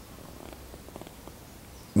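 A pause between a man's phrases: quiet room noise with a few faint, irregular clicks.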